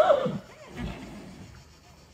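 A horse's whinny trailing off and falling in pitch at the start, followed by a short, fainter sound about a second in.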